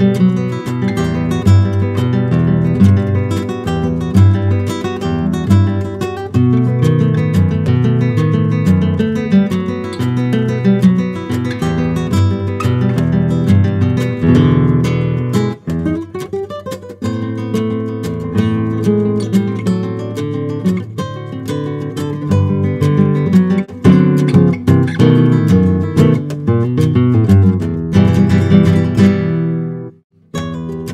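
Nylon-string flamenco guitar playing a rumba arrangement: a fingerpicked melody over arpeggiated chords, with strummed rasgueado chords near the end.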